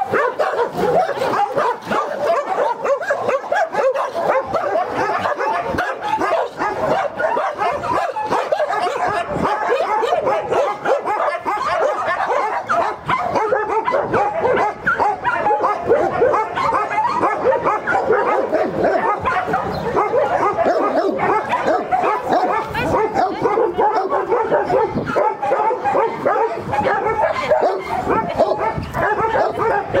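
Dogs barking and yipping continuously, many voices overlapping with no break.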